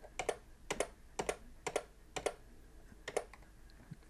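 Computer keyboard keys struck six times at an even pace, each stroke a sharp double click of the key going down and coming back up. The Enter key is being pressed to accept the defaults at a series of terminal prompts.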